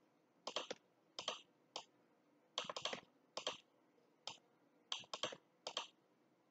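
Computer mouse and keyboard clicks from drawing hair paths with the pen tool, in about eight short groups of one to four quick clicks each.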